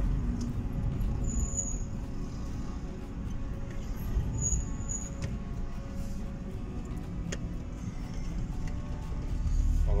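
Steady low road and engine rumble of a car driving, heard from inside the cabin.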